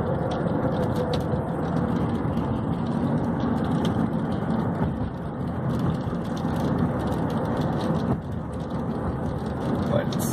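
Road noise heard from inside a moving car: a steady rumble of engine and tyres, easing slightly about eight seconds in, with faint scattered ticks over it.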